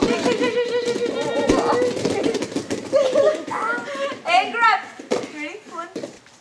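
Several children's voices chattering and calling out over one another; one voice holds a long steady note for the first couple of seconds.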